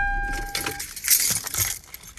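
A van's engine shuts off about half a second in, a steady electronic chime tone stopping with it, followed by a set of keys jangling loudly for nearly a second.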